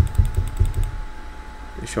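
Stepper motors of a Mecolour M10 diode laser engraver jogging the laser head along its gantry in a quick series of short moves with light clicks, during the first second.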